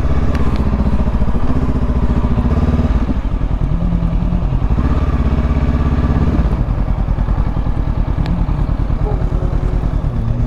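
Honda CB500X's parallel-twin engine running at low revs as the bike rolls slowly, its pitch rising and falling a few times with the throttle.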